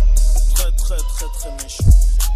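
Hip hop track with a rapped vocal line over deep bass and crisp hi-hats, with a heavy bass hit near the end.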